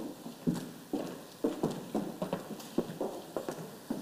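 Footsteps of people walking across a stage floor, a run of sharp knocks about two a second.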